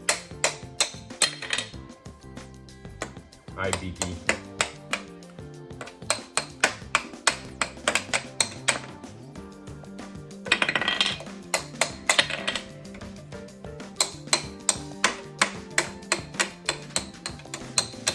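Plastic toy hammers tapping the plastic ice blocks of a Don't Break the Ice game, a run of light, sharp clicks at about three a second, with background music underneath.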